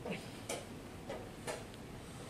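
Light wooden clicks and taps, about four of them roughly half a second apart, from chess pieces being set down and chess-clock buttons pressed on the surrounding boards.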